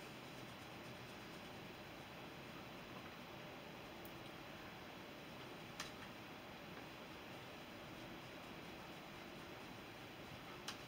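Faint, steady hiss of room tone with no distinct activity, broken by a single soft click just before the six-second mark.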